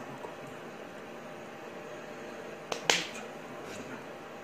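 Two sharp slaps of a signer's hands striking together, close together near the end, the second louder, over a steady low room hiss.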